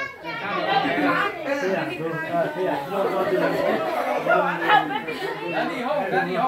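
A roomful of people chattering, many voices talking over one another.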